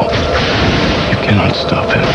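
Action-film trailer soundtrack: a sudden blast-like burst at the start over a low rumble, mixed with dramatic music and voices.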